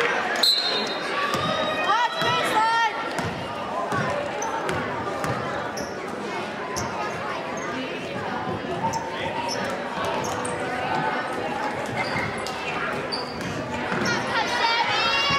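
A basketball being dribbled on a gym's hardwood court, bouncing repeatedly, under the steady chatter and shouts of players and spectators, all echoing in a large gym.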